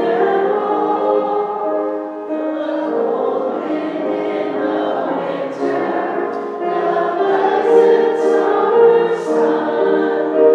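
Voices singing a hymn in sustained, held notes, with the words "the pleasant summer sun" and "the ripe fruits in the garden".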